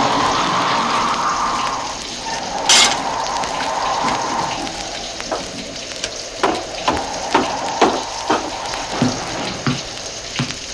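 Sound effects from an old vinyl record over steady surface crackle. A wind howl runs for the first few seconds, there is one sharp knock about three seconds in, then slow footsteps, about two a second, fill the second half.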